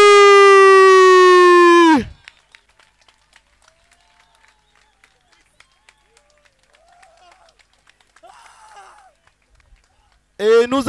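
An announcer's voice stretching the winner's name into one long held call, its pitch falling slightly, cutting off about two seconds in. After that there is only faint scattered clapping and a few distant voices.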